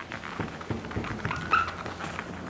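Short scratchy strokes on a whiteboard, with a brief squeak about one and a half seconds in.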